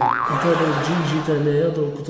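A man's voice talking, with a short sliding tone that rises and falls right at the start, like an added comic 'boing' sound effect.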